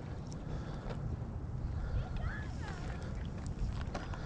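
Wind buffeting the microphone as a steady low rumble, with a few short high calls about two seconds in from waterfowl on the pond.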